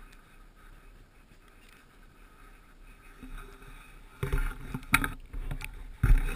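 Movement over icy, crusted snow: quiet at first, then loud scuffing and scraping from about four seconds in, with a couple of sharp knocks.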